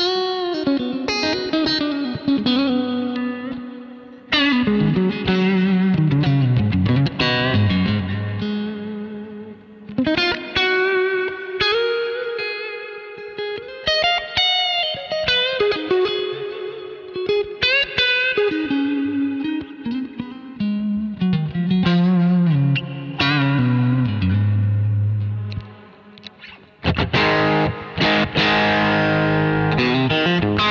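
Freshly restrung and tuned Stratocaster electric guitar played lead: single-note lines with string bends and vibrato, broken by short pauses, then a dense, busy passage of many notes near the end.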